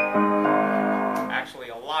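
Kawai RX-2 5'10" grand piano: a chord struck about half a second in rings and then fades away as the playing ends. The piano is out of tune.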